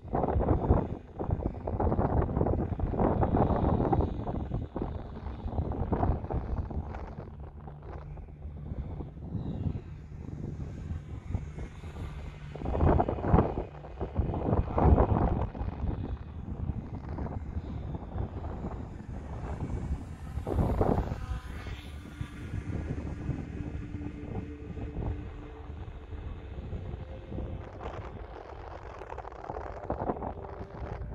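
Wind buffeting the microphone in strong gusts, loudest about a second in, around the middle and about two-thirds of the way through. Under it, the faint whine of a small electric RC glider's brushless motor and propeller, high overhead.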